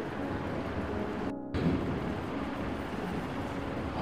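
Steady rushing background noise with no voice, cut by a brief dropout about a second and a half in.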